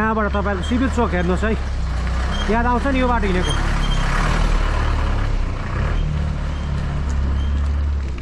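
A bus passing close by on a dirt road: a low engine drone throughout, swelling to a loud rushing noise of engine and tyres from about three and a half to seven seconds in.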